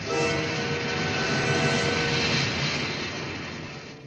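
A loud rushing hiss with a few steady tones in it. It starts abruptly and slowly fades over the last couple of seconds.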